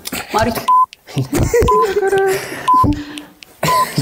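Short electronic beeps at one steady high pitch, about one a second, in the manner of a game-show countdown timer, over people talking and laughing.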